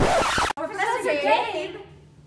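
A short, loud rushing sound that cuts off abruptly about half a second in, followed by a voice exclaiming with sweeping rises and falls in pitch, fading out near the end.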